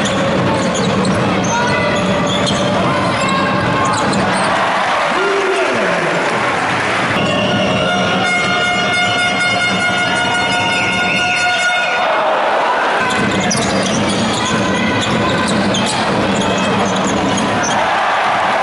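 Crowd noise of a packed basketball arena during live play, with ball bounces. A held horn-like tone of several pitches sounds from about seven to twelve seconds in.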